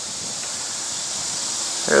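A steady high-pitched hiss with no distinct events, and a man's voice starting right at the end.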